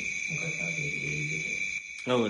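A man's voice, quieter than the main speech, held in long drawn-out syllables. A steady high-pitched electrical whine runs through the recording. The voice stops shortly before the end.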